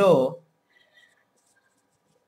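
A man's voice finishes a phrase in the first moment, then a marker pen writes on a whiteboard with faint short squeaks and scratches.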